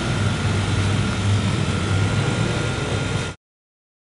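Steady low rumble with hiss and a faint high whine, like machinery or traffic, cutting off suddenly about three and a half seconds in.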